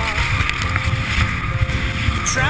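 Wind rumbling and buffeting on an action camera's microphone during a fast run through powder snow, with strummed folk-rock music underneath.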